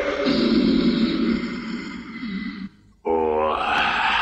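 A cartoon character's voice: a long, low groaning sound, then after a short break a pitched grunt.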